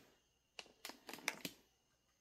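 A quick run of about six light clicks and knocks, small hard things tapping together, over about one second.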